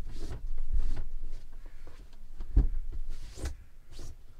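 Bedding being handled on a camper bed: fabric rustling with a few soft thumps, the loudest a low thump about two and a half seconds in.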